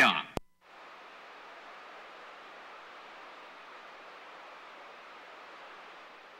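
A single click just under half a second in, then steady, even hiss of static from a CB radio receiver with no station coming in.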